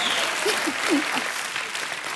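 Studio audience applauding, an even patter of many hands clapping, with a few short voices heard over it in the first second.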